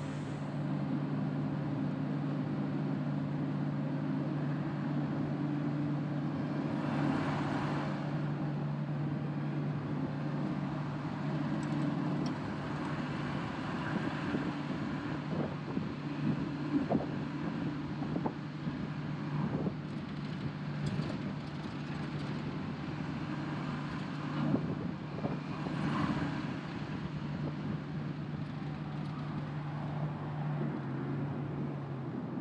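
Caterpillar 535D log skidder's diesel engine running steadily under way with a constant low drone. Scattered knocks and rattles come through it between about fifteen and twenty-five seconds in.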